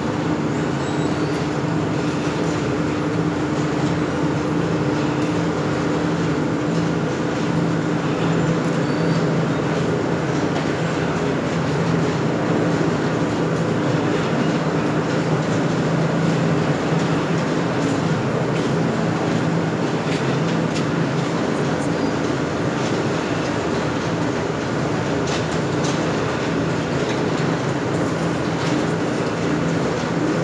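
Cottonseed oil expeller presses running: steady, loud machine noise with a constant low hum and scattered faint clicks.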